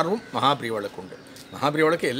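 A man speaking in Tamil in short phrases, with a brief pause near the middle.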